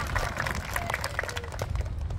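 A small crowd applauding with scattered hand claps and a few voices calling out. The clapping thins out and dies away near the end.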